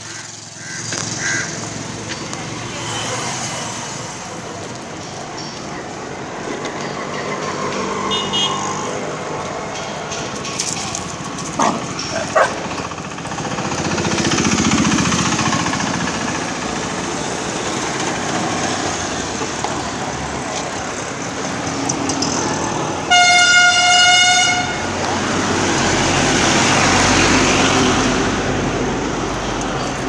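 Street traffic noise with a vehicle horn sounding once, a single steady toot about a second and a half long, roughly three quarters of the way through. A couple of sharp knocks come near the middle.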